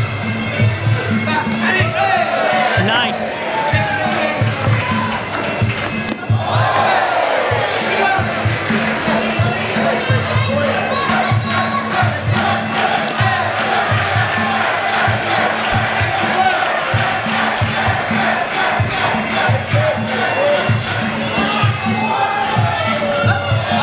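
Fight crowd shouting and cheering over traditional Muay Thai ring music with a steady, pulsing drumbeat. The shouting dips briefly about six seconds in, then swells louder.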